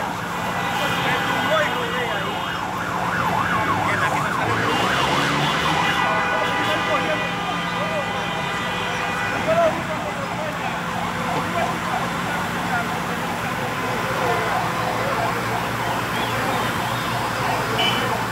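Emergency vehicle sirens sounding, at times with a rapid wavering tone, over voices and a steady low hum.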